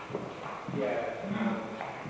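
Faint, indistinct talk among people in the room, with a few footsteps on the hard floor.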